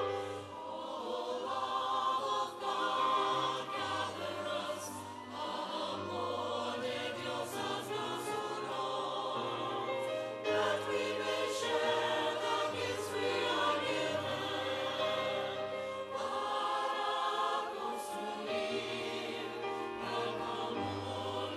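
Parish choir singing a sacred piece over sustained low accompaniment notes that change every second or two.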